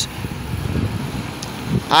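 Wind buffeting the microphone: an uneven low rumble with no clear tone.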